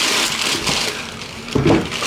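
Tissue paper crinkling and rustling as hands peel it back and lift it out of a shoe box.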